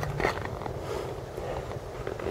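Low, steady outdoor noise: wind rumbling on the microphone, with faint crunching footsteps on snow and ice.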